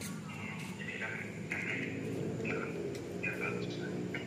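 Indistinct voices talking in the background, with no clear words, over a steady low room hum.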